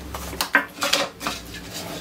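Hard plastic parts of a white dome CCTV camera clicking and knocking as they are handled and separated: several short clicks in quick succession.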